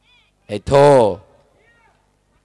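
A man shouting one drawn-out word into a stage microphone, his voice falling in pitch, in a brief pause of an impassioned speech.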